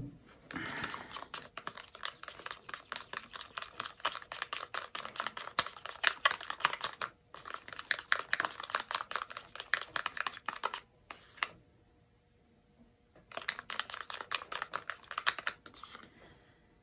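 A stirring stick clicking and scraping against the inside of a plastic cup as thick green acrylic paint is mixed: fast runs of ticks in several bursts, with a brief break around the middle and a longer pause about two-thirds of the way through.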